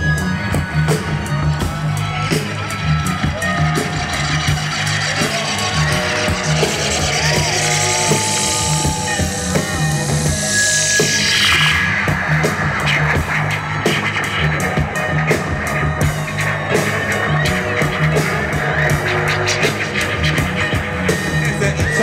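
Live hip-hop band with orchestra playing an instrumental passage: steady bass and drums under layered instruments. About ten seconds in, a high sweeping sound slides down in pitch.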